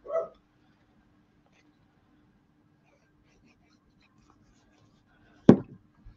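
A dog barks once, short and sharp, about five and a half seconds in, over a faint steady hum in a quiet room.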